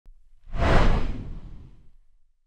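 A whoosh sound effect with a deep low rumble under it, swelling about half a second in and fading away over the next second and a half.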